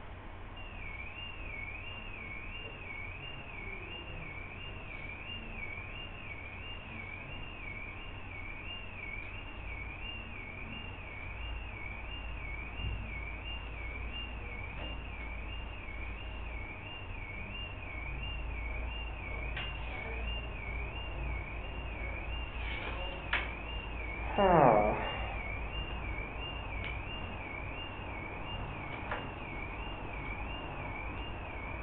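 A high electronic tone warbling up and down about twice a second, steady throughout, like an alarm sounding. A short falling sound comes about three-quarters of the way through and is the loudest thing, with a faint click just before it.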